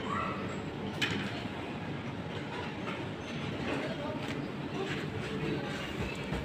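Steady background din of a large indoor play hall, with faint voices in the distance and a couple of light clicks.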